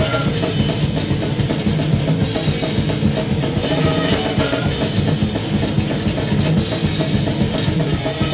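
Live metal band playing loud: distorted electric guitars and bass over a drum kit with fast, dense drumming.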